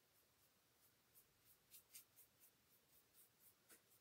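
Near silence with faint, soft scratching of a fine paintbrush stroking paint onto a small wooden piece, a few short strokes a second from about a second in.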